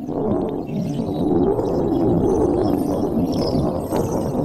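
A loud low rumbling drone that starts suddenly and holds steady, without a clear pitch.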